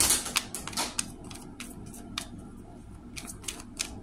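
Tarot cards being shuffled by hand: a quick, irregular run of card slaps and clicks, densest in the first second, with another cluster near the end.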